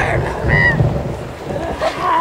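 Wind buffeting the camera microphone as a low rumble, with a brief high shout about half a second in and young people's voices coming back near the end.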